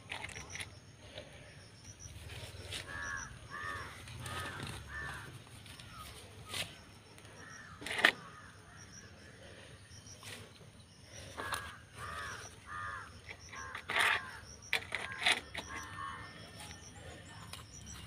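A bird calling in two runs of four or five repeated calls about half a second apart, a few seconds in and again past the middle, with a few sharp knocks in between.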